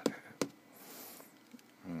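Two fingertip taps on an iPad touchscreen running a lap timer, about 0.4 s apart, the last ones before the timer is stopped. A short hiss follows, then a hummed "mm" near the end.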